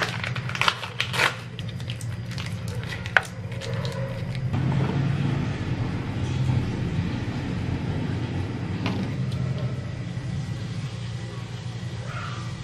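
Plastic mayonnaise sachet torn open and squeezed, giving crinkling and sharp clicks for the first three seconds. Then comes a soft, steady pour as milk runs from a carton into a ceramic bowl, over a low steady hum.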